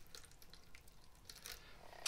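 Faint trickle of water poured from a plastic measuring cup into a seed-starting tray between swelling peat pellets, otherwise near silence.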